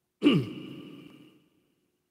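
A man's short vocal sound, its pitch falling, fading out over about a second.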